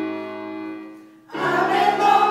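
Choir singing with electronic keyboard accompaniment: a held chord fades away, then the choir comes in loud on a new sustained chord near the end.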